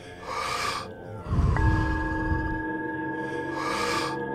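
Wim Hof power breathing: two sharp, hissing inhales, about half a second in and again near the end, with a rushing exhale between them. Under the breathing is ambient meditation music, in which a bell-like tone is struck about a second and a half in and rings on.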